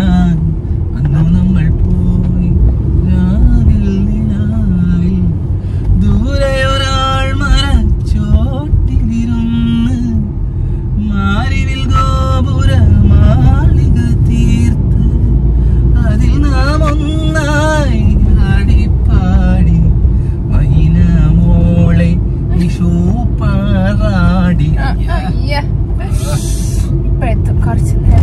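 Steady road and engine rumble inside a moving car's cabin, with voices talking and laughing over it.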